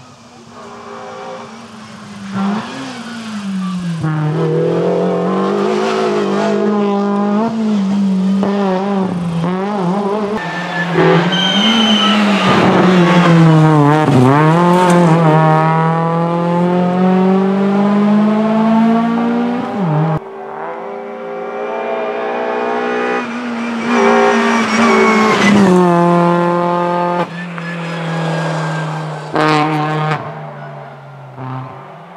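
Kia Picanto rally car driven flat out on a tarmac stage, its engine revving up through the gears and dropping on each shift and on braking, heard over several passes. There is a short high tyre squeal about eleven seconds in.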